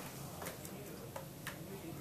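Quiet room tone with a steady low hum and four faint, irregular clicks spread across two seconds.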